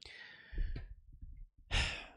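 A man breathing close to a microphone: a soft sigh-like exhale, a few low bumps, then a louder intake of breath near the end.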